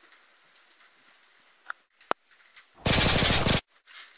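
A short burst of rapid automatic gunfire, under a second long, that starts abruptly about three seconds in and cuts off sharply. A single sharp click comes just before it.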